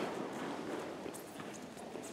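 Quiet hall noise with faint shuffling and tapping of bare feet on a judo mat as two partners step in and take grips.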